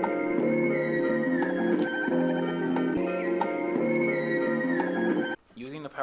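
A looped music sample playing back from a projected MPC-style sampler, its sustained chord tones repeating steadily. It cuts off abruptly about five seconds in.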